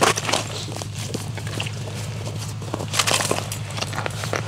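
Boots crunching on snow-covered ice and clothing rustling as a person steps up and kneels at an ice-fishing hole, with a brief louder scuff about three seconds in. A steady low hum runs underneath.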